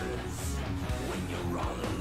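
Progressive rock song playing, a full band led by electric guitar, running steadily.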